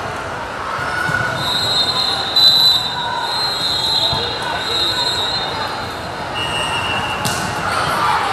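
Gym sounds between volleyball rallies: spectators and players chattering and balls bouncing on the hardwood floor. Near the end, a short steady whistle-like tone is followed by a sharp hit, fitting the referee's whistle and the serve.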